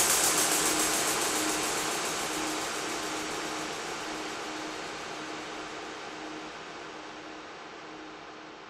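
Closing noise wash of an electronic dance music set: an even hiss fading steadily away, with a faint low tone pulsing beneath it.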